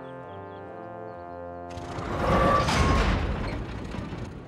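Orchestral cartoon score holding sustained chords, then about two seconds in a loud rumbling crash rises and dies away: the sound effect of railway trucks coming off the line.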